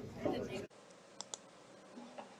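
Voices in a hall, cut off abruptly under a second in, then quiet room tone with two sharp clicks in quick succession.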